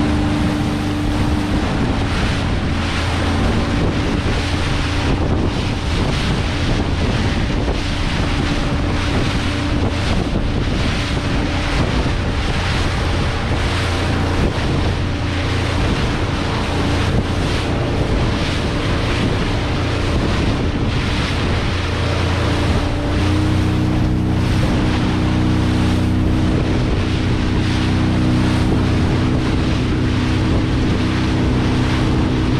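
A motorboat under way: its engine running steadily under wind buffeting the microphone and water rushing and splashing along the hull. The engine's hum grows more prominent over the last few seconds.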